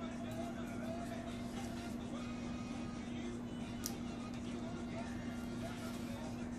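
Faint background voices and music over a steady low hum, with one small sharp click about four seconds in.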